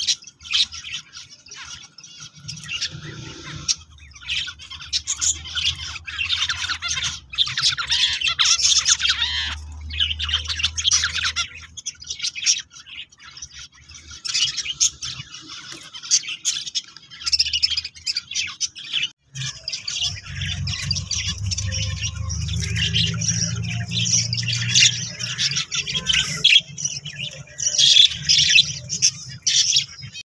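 Zebra finches in a nest pot giving a dense run of rapid, raspy calls without pause. A low rumble joins them from about two-thirds of the way in.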